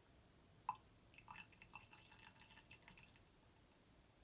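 Hydrochloric acid dripping into a glass test tube of deep-blue ammoniacal copper sulfate solution: one faint drip a little under a second in, then about two seconds of soft, irregular crackling ticks as the acid reacts with the ammonia and gives off dense ammonium chloride vapour.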